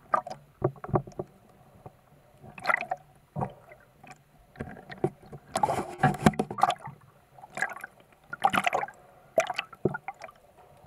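Water splashing and sloshing in irregular bursts, the longest cluster around the middle, heard through a camera held just below the surface.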